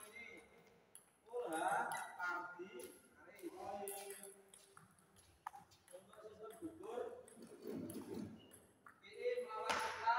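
Table tennis rally: a few sharp clicks of the ball struck by paddles and bouncing on the table, the strongest near the end, under people talking in the hall.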